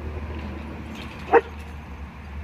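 A dog playing at a garden-hose spray gives one short, sharp yip just over a second in, over a steady background hiss.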